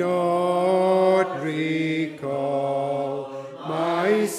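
A congregation singing a metrical psalm unaccompanied, in slow, long held notes that move to a new pitch about once a second.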